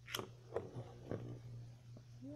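Two launched Beyblade spinning tops landing and knocking in their stadium: four faint, short clicks and knocks spread over two seconds.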